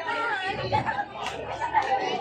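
Crowd chatter: several people talking over one another at once.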